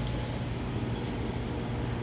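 A steady low mechanical hum with a faint hiss behind it, unchanging throughout.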